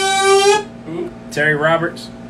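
A man singing: a long note held at one pitch breaks off about half a second in, and a short wavering sung phrase follows near the end.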